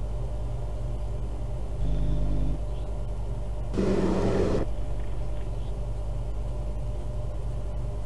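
Steady low hum and rumble of live-stream audio from the loading camera feeds, with a burst of noise lasting just under a second about four seconds in, as the feeds start playing.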